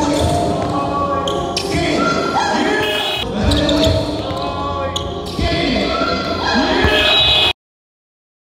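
A basketball being dribbled on a hardwood gym floor during one-on-one play, with sneakers squeaking and voices in the hall. The sound cuts off suddenly about seven and a half seconds in.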